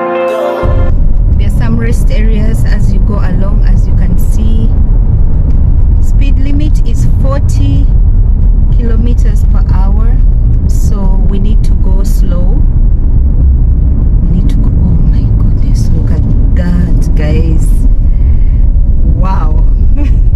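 Background music cuts off under a second in, giving way to the loud, steady low rumble of a car's engine and tyres heard from inside the cabin as it climbs a steep mountain road, with people talking over it.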